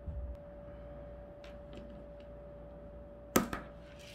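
Scissors picked up and handled on a craft cutting mat: a few faint taps, then one sharp click a little over three seconds in, over a faint steady hum.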